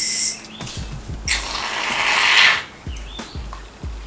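Aerosol can of styling mousse dispensing foam: one loud hiss lasting about a second and a half, starting just over a second in, after a short hiss at the start and a few light knocks of the can.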